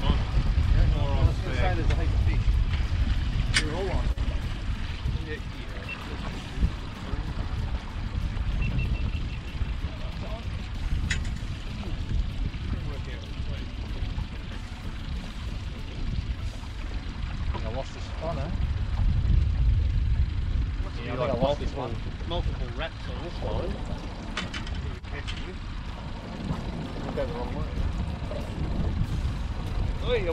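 Steady low rumble on a small fishing boat, with muffled talk at times and a few sharp clicks.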